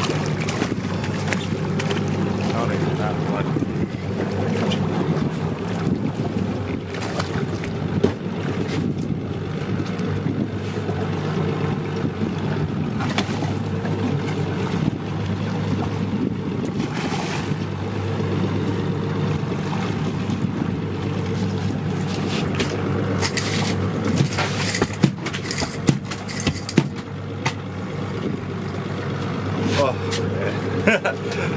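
Evinrude outboard motor running steadily at idle, under wind and water noise. A run of short sharp splashes comes about three-quarters of the way in as a fish thrashes at the side of the boat.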